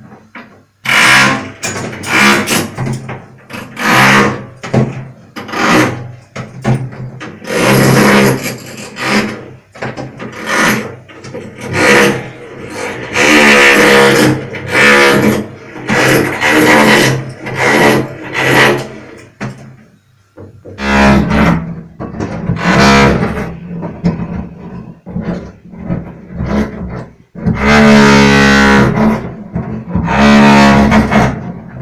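Hammer drill run in short bursts of about a second each, its motor whine sounding with a rasping chatter of the bit in masonry. From about two-thirds of the way in a steady low hum runs under the bursts, and near the end one burst lasts about two seconds.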